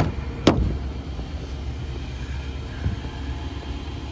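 A single sharp click about half a second in as the front passenger door of a 2017 Infiniti QX80 is unlatched and pulled open, with a fainter knock near three seconds, over a steady low rumble.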